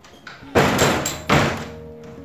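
Wooden cupboard door being handled: two loud knocks about three-quarters of a second apart, each with a short ring-out.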